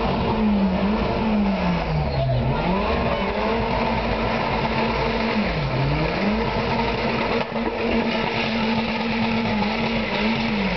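Car engine held at high revs while the wheels spin and slide through a drift, with tyres squealing. The revs drop and climb back sharply twice, about two seconds in and again near the middle, then stay high and steady.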